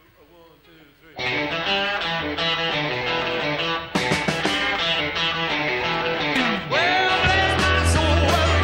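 A rock and roll band with electric guitars, drums and keyboard playing. It starts loud and full about a second in after a quiet opening, and the bass comes up strongly near the end.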